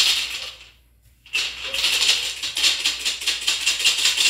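A hand-held maraca shaken: one short shake at the start, then after about a second of quiet, steady fast shaking begins and keeps going, setting the beat for a ponto about to be sung.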